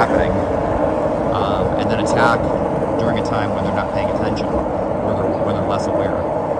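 Skateboard wheels rolling over asphalt, a steady rumble with no break, with a few short chirp-like pitched sounds above it.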